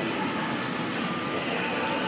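Steady background noise of an indoor dining hall, with no distinct event.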